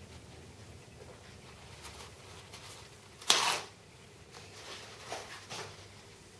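A roll of paper towel is unrolled and pressed flat over perforated release film on a wing mould, making soft paper rustling. About halfway through comes one short, loud rustling crinkle, followed by a few softer rustles.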